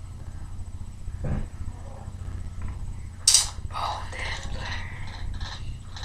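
A person's soft, broken muttering over a steady low hum, with a sharp hiss about three seconds in.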